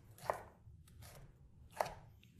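Chef's knife slicing through red bell pepper and knocking on a wooden cutting board: two clear cuts about a second and a half apart, with fainter ones between.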